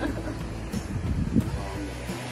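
Wind rumbling steadily on the microphone, with surf in the background and some brief laughter near the start.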